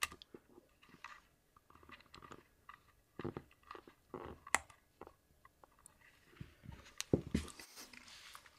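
Small clicks and rubs of a lavalier microphone's threaded 3.5 mm plug being pushed into a Comica wireless transmitter and its locking collar screwed down, with handling of the transmitter. Sharper clicks come about three, four and a half and seven seconds in.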